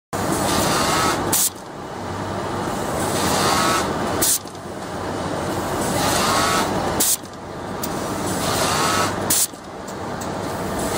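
Automatic sewing workstation for darts running in repeated cycles. The sewing noise builds over a couple of seconds, then breaks off with a short pneumatic hiss, about every three seconds, over a steady din of factory machinery.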